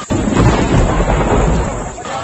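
Thunder-like sound effect: a sudden loud crack just after the start, then a heavy rumble that fades away over about two seconds.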